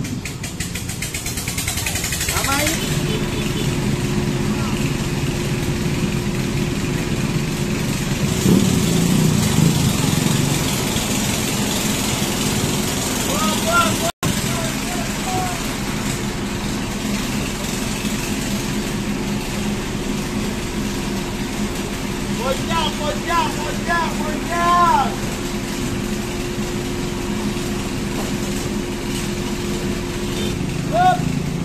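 A motor vehicle engine idling with a steady low hum, starting about two and a half seconds in, over the open-air bustle of a street.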